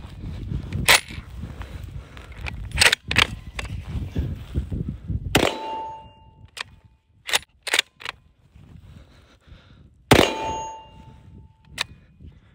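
Two shots from a DSR-1 bolt-action rifle in .300 Win Mag, about five seconds apart. Each is followed by a short, clear ringing tone as a steel target is hit. Sharp metallic clicks of the bolt being worked come before and between the shots.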